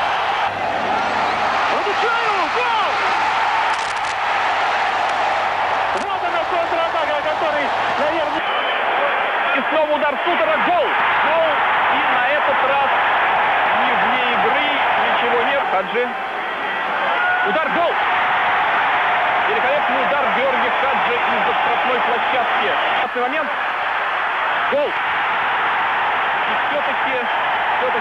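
Football stadium crowd noise from a match broadcast: a steady din of many voices throughout. The sound turns duller about eight seconds in, where the footage changes.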